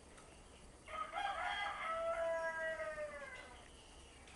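One long animal call lasting about two and a half seconds, starting rough and then held on a clear, slowly falling note.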